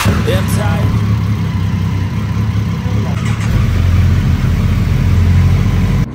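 Motorcycle engines idling steadily inside a concrete parking garage, growing a little louder in the second half.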